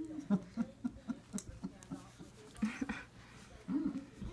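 Laughter in short rhythmic bursts, a few a second, in two runs, with a longer rising-and-falling vocal sound near the end.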